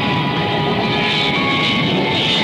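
Jet engines of Douglas A-4F Skyhawk II aircraft (Pratt & Whitney J52 turbojets) running on the ground, a steady whine and rush, with music underneath.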